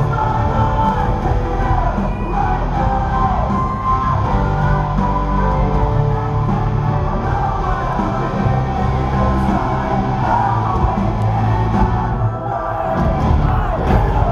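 Live rock band playing loud in an arena, with singing over drums and distorted guitars and the crowd yelling, recorded from the stands. The music drops out briefly about twelve seconds in, then starts again.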